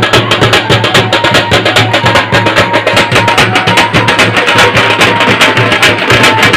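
Loud music with a fast, dense percussion beat.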